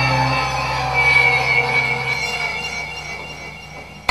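Sustained squealing, screeching tones held over a low drone, an ambient noise passage from a live experimental rock band. The low drone drops away in steps and the whole texture slowly fades.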